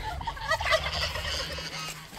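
Farmyard poultry calling, a busy chatter of many short calls that thins out near the end.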